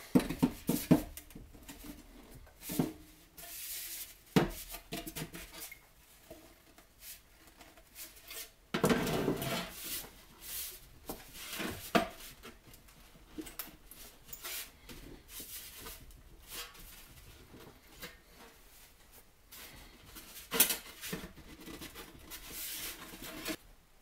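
A rolled sheet-steel tube handled and set down on a wooden workbench: scattered metallic knocks and clanks, with a longer scrape about nine seconds in.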